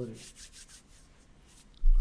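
Faint, scattered rubbing and rustling noises, likely handling or movement near the microphone, with a sudden low thump near the end.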